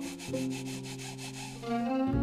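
Hands rubbing wet wool felt through nylon netting in quick back-and-forth scrubbing strokes: the felting of the wool fibres. Soft background music of held notes plays under it.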